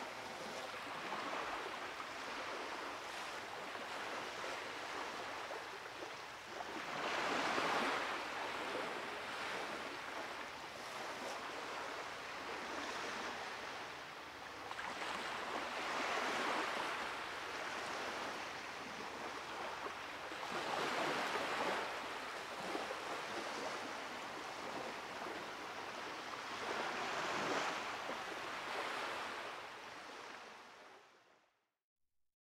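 Ocean surf washing onto a beach: a steady wash of water that swells into the louder rush of a breaking wave every five to eight seconds.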